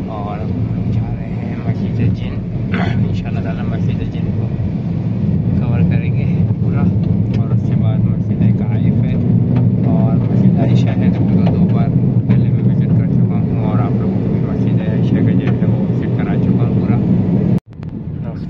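Steady engine and road drone inside a moving car's cabin, under a man talking.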